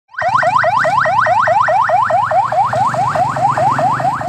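Ambulance electronic siren in its fast yelp mode: a loud, rapidly repeating rising wail, about four to five sweeps a second, over a low hum.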